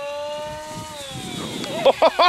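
Durafly Goblin Racer RC plane's electric motor and propeller whining in flight, its pitch dropping from about a second in. A voice breaks in with a laugh near the end.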